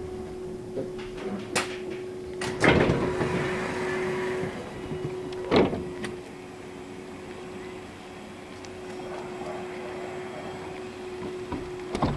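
VDL Citea SLE-129 Electric bus at a stop: its doors open with a loud clunk and a rush of air about two and a half seconds in, followed by a single sharp knock a few seconds later. A steady hum from the bus runs underneath throughout.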